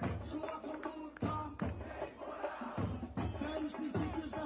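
Music with a drum beat and a crowd singing and chanting at a street protest, as recorded on a phone and played back over the assembly's sound system.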